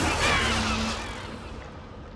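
Magic lightning sound effect: a noisy electric crackle and whoosh that dies away over about a second and a half.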